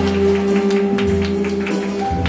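Live jazz quintet of alto and tenor saxophones, piano, double bass and drum kit playing, with a long held saxophone note over repeated cymbal strokes.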